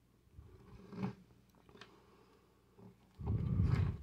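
Handling noise of plastic action figures being picked up and moved: faint rustles and a small click, then a low rubbing rumble near the end as hands come close to the microphone.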